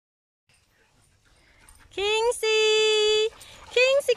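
A person's high voice calling a dog in a long, drawn-out two-syllable call: a rising first syllable, then a steady held note. A second call starts near the end.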